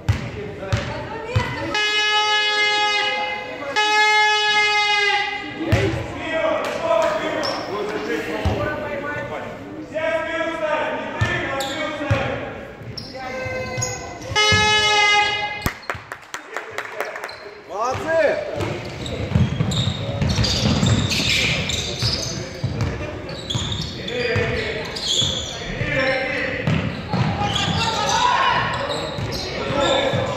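Indoor basketball game: a ball bouncing on the hardwood court and players' shoes, with voices shouting. In the first half come several long held tones of about a second each, and from about the middle on the bouncing and footfalls grow dense.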